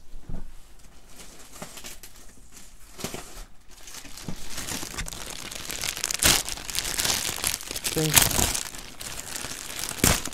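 Clear plastic packaging bag crinkling and crackling as it is handled, with a burlap bag inside. It grows busier from about four seconds in, with the loudest crackles near the middle and again near the end.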